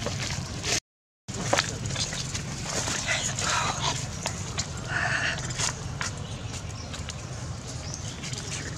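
Baby long-tailed macaque giving short squealing cries while adults hold and groom it, about three seconds in and again around five seconds. Dry leaves crackle throughout.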